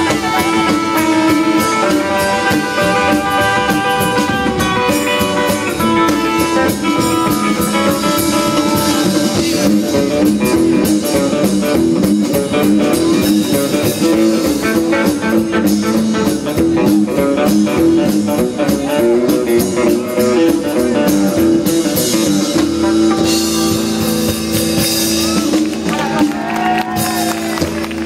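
A live band playing an instrumental in fifties rock-and-roll style on electric guitar, upright double bass and drum kit. Near the end it settles on a held chord with cymbal crashes.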